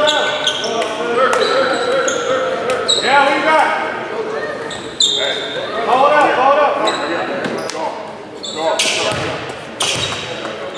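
Indoor basketball gym ambience in a large echoing hall during a free-throw stoppage: indistinct voices from players and spectators, a basketball bouncing on the hardwood floor, and short high sneaker squeaks.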